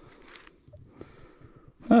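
A pause with only faint low noise and a soft click or two, then a man's voice starting near the end.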